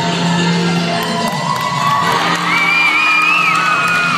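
Recorded dance music playing, with a crowd cheering and whooping over it from about a second in, high voices calling out.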